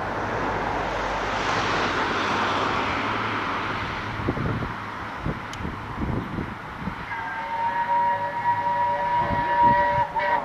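BR A1 Class 4-6-2 steam locomotive 60163 Tornado approaching with its train, a steady rumble at first, then its whistle sounds one long, steady chord-like blast from about seven seconds in, still held at the end.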